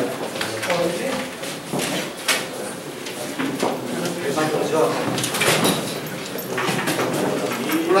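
Indistinct chatter of several people talking at once in a large room, with a few light knocks and rustles of handling papers.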